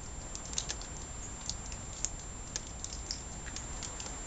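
Irregular light clicks and ticks, a few a second, over a low steady rumble.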